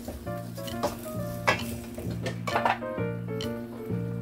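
A ladle stirring pork pieces in a stainless steel pot, with scrapes and knocks against the pot, the sharpest about a second and a half in, over background music.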